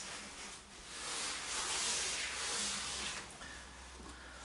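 A person settling to rest on an exercise mat: a soft, even hiss that swells about a second in and fades after about two seconds.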